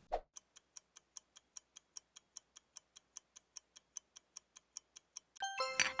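Quiet clock-ticking sound effect, about five ticks a second, ending in a short bright chime of several notes just before the end.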